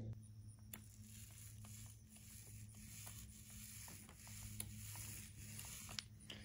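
Faint, irregular crackle of a paint roller on an extension pole working wet paint along a fiberglass boat's gunnel cap, over a steady low hum.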